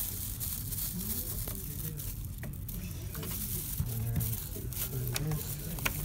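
Used thermal-transfer ribbon film crinkling and rustling as it is pulled and slid off a Zebra ZT410 label printer's spindles. A few sharp clicks come from the printer parts being handled.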